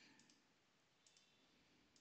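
Near silence with a few faint computer mouse clicks: a pair about a second in and another near the end.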